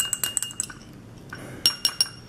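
A metal utensil stirring oil and food colouring in a drinking glass, clinking against the glass: a quick run of short ringing clinks at the start and two more near the end.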